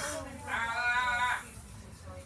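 A single drawn-out, high-pitched vocal sound starting about half a second in and lasting about a second, over a low steady rumble.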